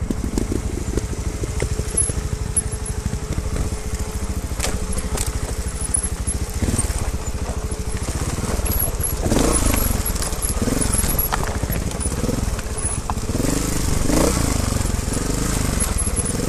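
Trials motorcycle engine running close by as the bike is ridden down a rocky trail, the revs rising and falling repeatedly through the second half. A few sharp clicks and rattles from the bike over the rocks.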